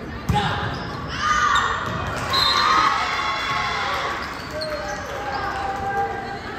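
A volleyball struck hard once, then players and spectators shouting and cheering, echoing in a large gym.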